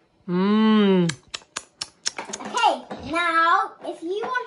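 A quick run of about six sharp taps of chalk on a toy easel's chalkboard, about a second in. They follow a held, pitched voice sound that is the loudest thing heard, and a little voice comes after them.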